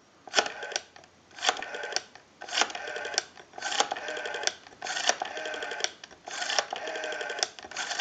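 Western Electric 302 rotary dial being dialed through successive digits, about one a second: each time a click as the finger wheel is wound and released, then the whirring, pulsing return of the dial. The dial returns smoothly.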